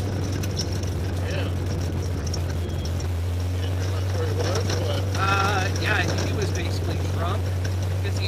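Race car's engine running steadily at low road speed, a constant low drone heard from inside the cabin.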